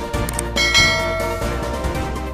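Background music with a bright bell chime sound effect that strikes about two-thirds of a second in and rings out, fading.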